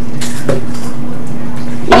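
Steady classroom room tone, an even hiss under a constant low hum, with a brief faint sound about half a second in. A voice starts right at the end.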